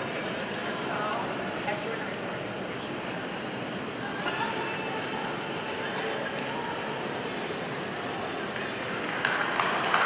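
Indoor arena crowd murmur, with the hoofbeats of a cantering horse on the arena footing. Applause breaks out near the end as the round finishes.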